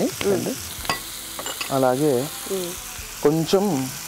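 Chopped onions and green chillies sizzling as they fry in oil in a pan, with a few clicks of a wooden spatula stirring against the pan about a second in.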